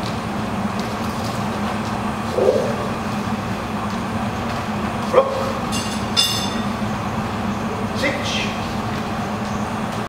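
Steady low background hum, with one sharp knock about five seconds in followed by a brief high ringing.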